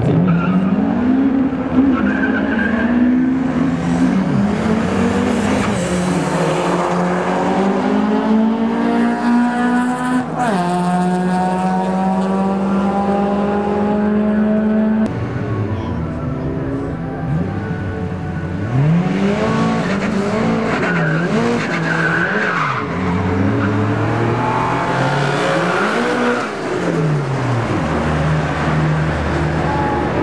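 Drag-strip car engines. In the first half, an engine accelerates hard with its pitch climbing, drops suddenly about ten seconds in, then holds a steady tone. In the second half, engines rev up and down repeatedly at the start line.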